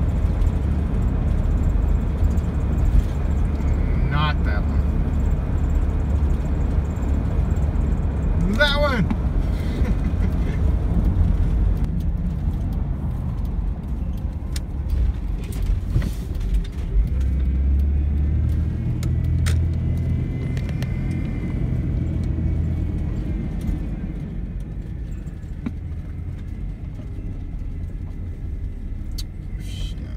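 Road and engine noise heard from inside a car's cabin while driving: a steady low rumble that shifts as the car turns off and grows quieter over the last several seconds as it slows.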